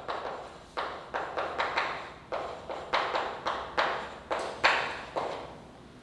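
Chalk tapping and scraping on a blackboard as a formula is written: a quick, uneven run of about a dozen short, sharp strokes that stops a little after five seconds in.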